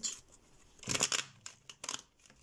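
A deck of tarot cards handled and shuffled in the hands: two short bursts of card rustle and snap, one about a second in and a shorter one near the end.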